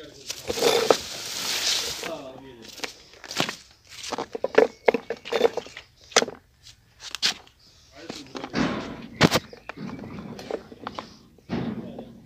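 A man talking in short spells, with scattered sharp knocks and clicks between his words.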